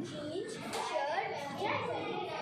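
A young boy talking.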